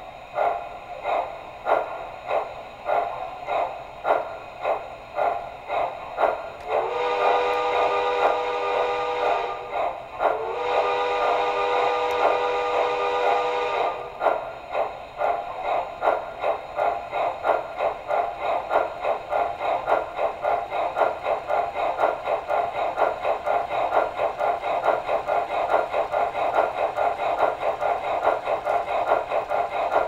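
The onboard sound system of an MTH Southern Crescent Limited PS-4 4-6-2 model steam locomotive playing steam exhaust chuffs that speed up steadily. Two long chime whistle blasts sound about a quarter of the way in, one right after the other, and the chuffing comes back louder after them.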